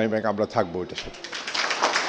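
A man's voice over a microphone drawing out a single word, followed about one and a half seconds in by scattered applause from the audience starting up.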